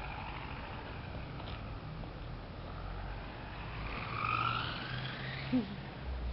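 Radio-controlled toy car's motor whining as it drives about, its pitch rising about four seconds in, over a steady low hum. A brief laugh near the end.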